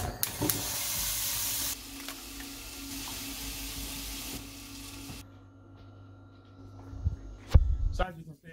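Hiss and sizzle of cooking in a frying pan on a gas hob, changing abruptly a couple of times and stopping about five seconds in. A sharp thump near the end.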